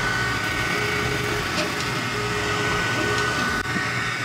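xTool D1 desktop diode laser engraver with its steady fan-like hum, and a faint motor tone that comes and goes in short stretches as the gantry moves the laser head to trace the frame outline before engraving.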